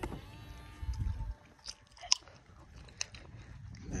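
Faint sounds of a car door being pushed shut by its handle, then a few light clicks and scuffs of footsteps on a concrete path.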